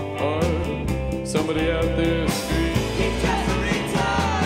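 Rock band playing live: electric guitar chords over bass and drums, with a melodic line bending in pitch above them.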